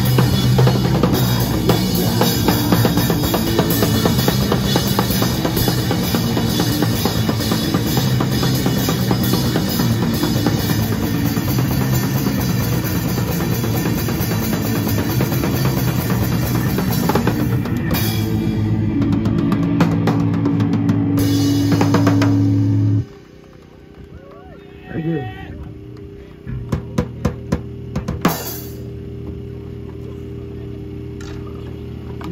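Live band playing loud through amplifiers: drum kit, electric guitar and bass. Near the end the drums drop out under a held chord, which then stops abruptly. After it come a steady amplifier hum and a few scattered drum hits.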